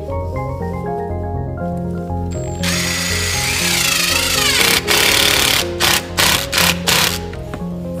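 Ridgid cordless driver running under load for about two seconds, its motor whine rising and then falling, followed by four short trigger bursts. Background music plays throughout.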